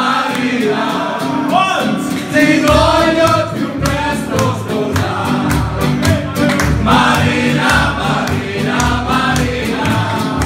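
A crowd of men singing loudly along to live party-band music with a steady beat, the bass coming in strongly about two seconds in.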